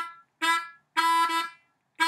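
Diatonic harmonica in A playing short repeated draw notes on the 2 hole in a choppy blues rhythm, the longest about a second in with a brief break in it.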